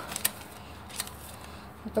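A few brief, sharp handling clicks as a paper till receipt is picked up and brought forward by hand, over low room noise; a woman begins speaking near the end.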